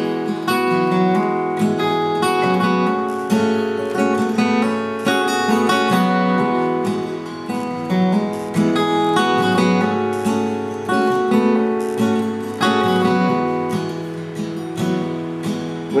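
Solo acoustic guitar strumming chords in a steady rhythm: the instrumental intro of a song, before the vocal comes in.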